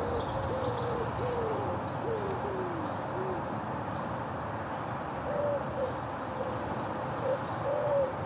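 A bird hooting: a run of about five short, low, falling notes over the first three seconds or so, then a few more calls from about five seconds in.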